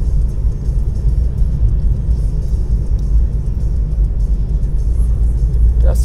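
Steady low rumble of engine and tyre noise heard inside a car's cabin, driving slowly at about 30 km/h.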